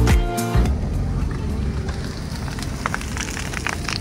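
Background music cuts off within the first second. Then comes a steady rumbling noise from a car with its window open, with a few faint crackles near the end from a smouldering roadside grass fire.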